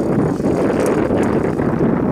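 Steady, loud wind noise buffeting the microphone.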